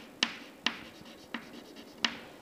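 Chalk writing on a chalkboard: three short, sharp taps with faint scraping between them as figures are written.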